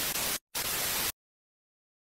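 TV-static glitch transition sound effect: an even hiss that breaks off briefly just under half a second in, resumes, and cuts off suddenly a little after a second in.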